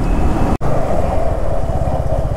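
Sport motorcycle engine running steadily under way, heard from on the bike, with a momentary break in the sound about half a second in.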